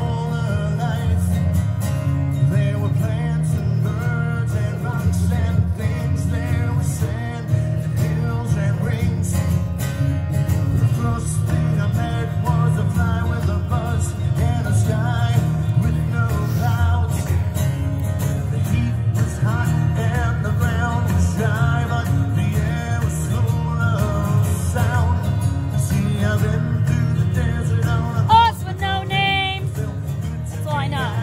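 Acoustic guitar strummed steadily in a country-style song, amplified through a PA speaker, with a man singing over it in parts.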